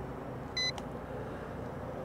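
A single short electronic beep from the MJX Bugs MG-1's remote controller about half a second in, confirming the switch from high speed to low speed mode, over a steady low background rumble.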